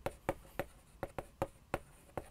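Chalk writing on a chalkboard: a quick run of short, sharp taps and scratches, about four a second, as the letters are written.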